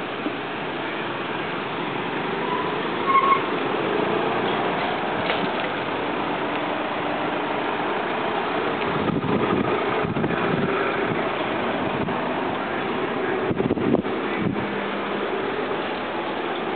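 A line of cars driving slowly past on a street, engines and tyres making a steady traffic noise, with louder rumbling passes about nine and fourteen seconds in.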